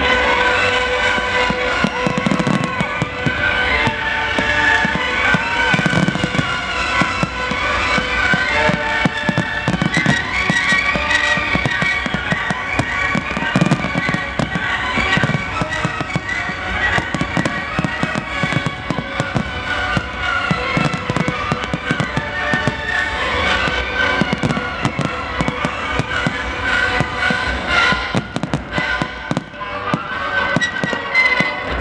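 Fireworks display: a steady barrage of bangs and crackles from aerial shells and ground fountains, with heavier thumps every few seconds, over music playing throughout.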